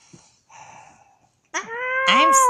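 A child's high-pitched, drawn-out wail in a squeaky puppet voice. It starts suddenly about a second and a half in and is held on one slightly rising note, after a faint breathy rustle.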